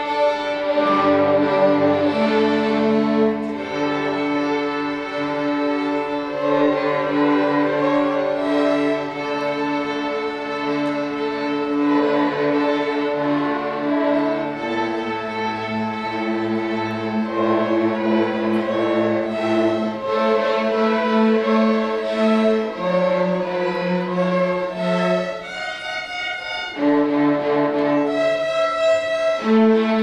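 A school string orchestra of violins and cellos playing sustained, slow-moving chords, the harmony shifting every few seconds. Near the end the playing drops briefly, then comes back in.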